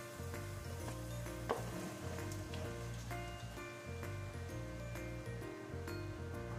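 Shredded chicken sizzling in a hot pot on a gas stove, under steady background music. A single sharp click about a second and a half in.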